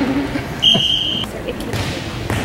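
Volleyball referee's whistle: one short, steady, high-pitched blast of about half a second, starting a little over half a second in.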